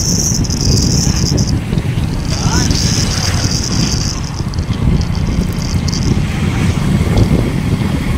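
A vehicle travelling along a road, with a heavy, uneven low rumble of wind and road noise on the microphone. A high-pitched buzz comes and goes in stretches of a second or two.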